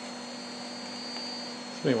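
Steady electrical hum with a hiss and a faint, thin, high steady whistle. A man's voice starts just before the end.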